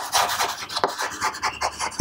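Chalk writing on a chalkboard: a run of quick, irregular scratching strokes as a word is written out.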